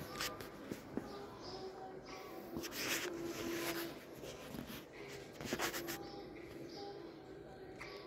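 Store ambience: faint background music and distant voices, with two short noisy bursts about three and five and a half seconds in.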